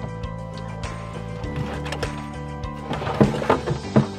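Background music with steady held chords, and a few short knocks near the end.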